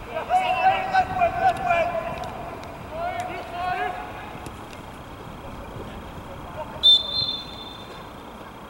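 Players shouting on the pitch for the first few seconds, then one loud, steady, high referee's whistle blast about seven seconds in, lasting about a second, the kind that stops play.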